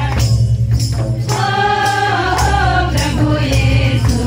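Group singing of a Sadri wishing song over a steady beat, with tambourine-like jingling percussion and a strong low drum.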